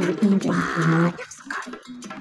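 A woman's voice speaking in drawn-out, held syllables for about the first second, then dropping away, with light background music underneath.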